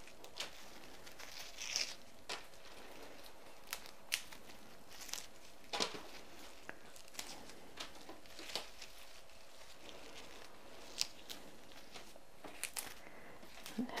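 Leaves being stripped by hand from chrysanthemum stems: faint, scattered tearing and rustling with occasional small snaps.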